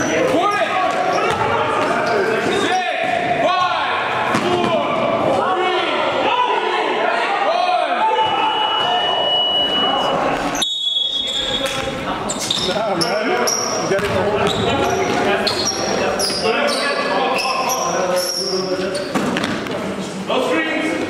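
Live game sound from a pickup-style basketball game in an echoing gym: players' and onlookers' voices calling out over a basketball bouncing on the hardwood. About halfway through, the sound breaks off abruptly and picks up again.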